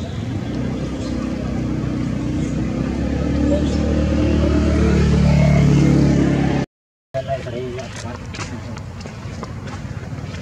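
A motor vehicle engine hums low and steady, growing louder as if coming closer, then cuts off abruptly about two-thirds of the way through. Afterwards there are only faint clicks and a brief wavering call.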